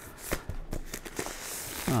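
Plastic shrink wrap crinkling as it is peeled off a cardboard record box set: a run of sharp crackles, with a brief rustle about a second and a half in.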